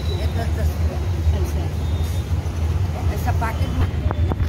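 Indistinct voices of people talking over a steady low rumble of street traffic.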